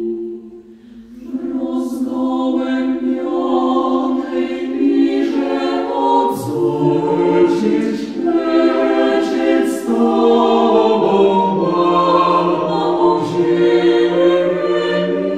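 A cappella vocal group singing in close harmony with no instruments. The voices fall away briefly just after the start, then come back in, and a low bass voice joins about halfway through.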